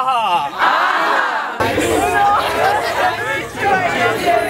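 A man's loud, drawn-out shouting, his voice wavering up and down in pitch. About a second and a half in there is an abrupt cut to a group of overlapping voices talking and calling out over a low background hum.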